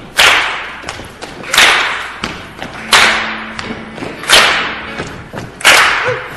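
Live band's drums playing a slow intro to the song: five loud hits about a second and a half apart, each fading out over about a second. A low steady note is held through the middle.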